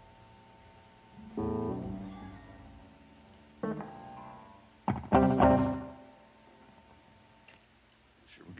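Electric guitar through an amplifier: a few single chords struck a second or two apart, each left to ring out and fade, the loudest about five seconds in.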